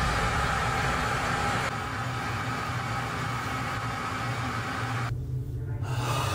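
Steady rumble and hiss of a jet airliner in flight. About five seconds in the hiss drops away abruptly, leaving a low hum.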